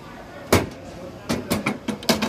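A quick string of sharp knocks and clicks from a phone being handled and swung around: one about half a second in, then four in quick succession in the second half.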